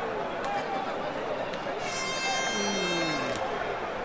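Arena crowd noise, a dense wash of many shouting voices, with a steady horn blast lasting about a second and a half starting about two seconds in, and a single voice sliding down in pitch near the end.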